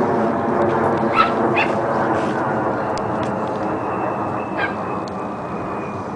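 Dogs playing rough, giving a few short high yips: two about a second in and one near the end, over a steady background noise.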